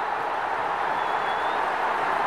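Steady hissing background noise of a locker room, with a faint brief high-pitched whistle about a second in.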